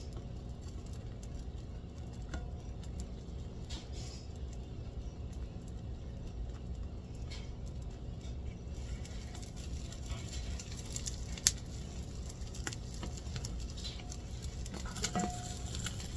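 Eggs sizzling and crackling faintly in a hot cast iron skillet while a metal spatula scrapes and taps against the pan, with scattered small clicks and one sharper click about eleven seconds in.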